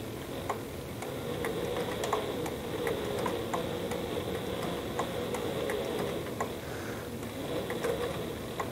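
Sailrite Leatherwork walking foot sewing machine stitching slowly through upholstery leather. Its motor hums steadily, with a tick at each stitch in slow, even succession.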